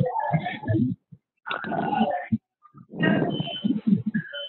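Indistinct, unintelligible voice sounds in three stretches of about a second each, heard through a narrowband conference-call audio line.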